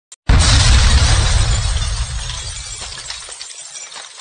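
Logo-intro sound effect: a sudden heavy impact with a deep boom and a shattering crackle that dies away over about three seconds.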